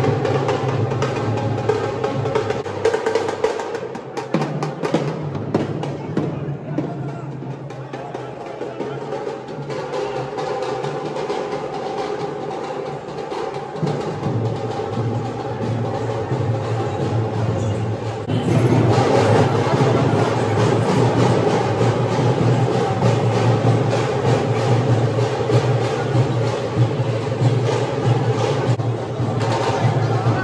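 Rapid, dense drumming from a festival procession, with crowd voices mixed in; the drumming gets louder and fuller a little past halfway.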